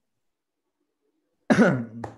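Silence, then about one and a half seconds in a man clears his throat once, a sudden loud burst that falls in pitch.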